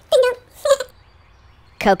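A cartoonish puppet-character voice: two short vocal syllables, then near the end a drawn-out cry with falling pitch as "coconut" is said.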